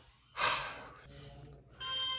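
A man's short, forceful breath out, a breathy huff that fades over about half a second. Music starts up near the end.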